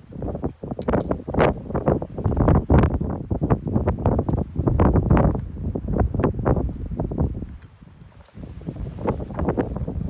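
Footsteps of hikers in crampons crunching up a steep snowy slope, a close, steady run of steps with a brief lull about eight seconds in.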